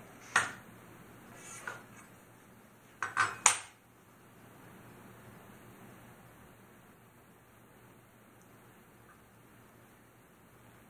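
A few sharp metallic clacks as a metal straight edge is handled and laid down on a wooden guitar body blank, with a cluster of them, the loudest, about three seconds in.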